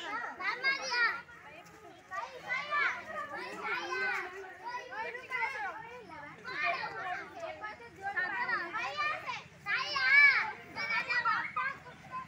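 A group of children and girls calling out and chattering at play, several high voices overlapping in bursts, loudest about ten seconds in.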